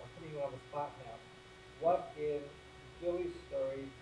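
Faint, distant speech from an audience member asking a question off-microphone, over a steady electrical hum.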